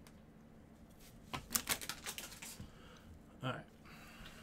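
A quick run of sharp clicks and taps, about a second and a half long, from thick trading cards being handled and shuffled in gloved hands.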